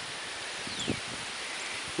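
Steady outdoor background hiss on a grass lawn, like light rustling, with a faint short falling whistle and a soft low knock a little under a second in.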